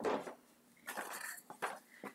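Small cosmetic product packages knocking and clinking together as a hand rummages through a makeup bag, in a few short irregular bursts with sharp clicks.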